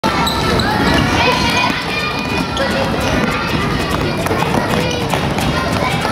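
Children's basketball game: a basketball bouncing on the wooden court amid many voices of players and spectators calling out.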